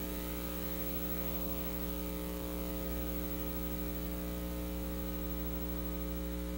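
Steady electrical mains hum, a low buzz with many evenly spaced overtones, unchanging throughout.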